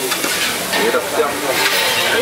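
Diced potatoes and meat frying and sizzling on a large flat griddle pan while a metal spatula scrapes and stirs them.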